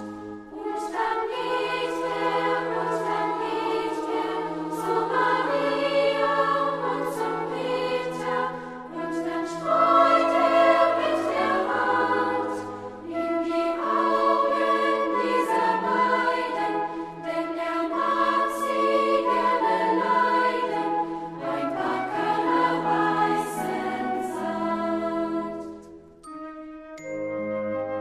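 Children's choir singing a German song in unison with piano accompaniment, in continuous phrases. The song ends right at the close.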